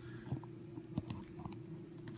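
Clear plastic fork stirring fried rice in a paperboard takeout box: a few faint soft ticks and moist squishes, over a steady low hum.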